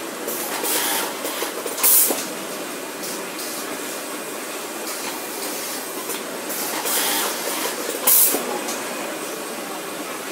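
Beisler automated sewing workstation running with a steady airy rushing noise. Short, loud pneumatic air blasts come about two seconds in and again about eight seconds in, with weaker hisses near one and seven seconds.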